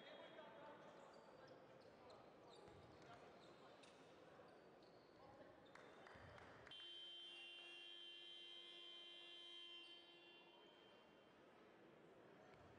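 Faint hall ambience with crowd murmur and a few ball bounces on the court. About two-thirds of the way in, a basketball game horn sounds one steady buzz for about three seconds and cuts off suddenly, signalling a stoppage in play.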